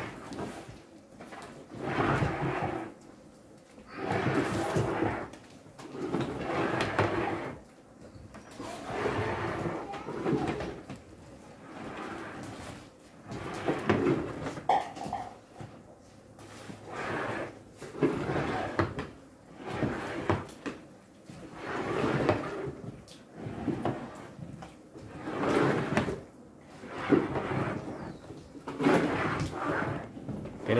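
Paddles scraping and sloshing through thick, hot sugarcane syrup in a wooden trough. The strokes come steadily, about one every two seconds, as the syrup is stirred to make panela.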